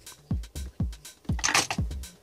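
Background electronic dance music with a steady kick drum about twice a second and light ticks between the beats. A brief hissing swell comes about a second and a half in.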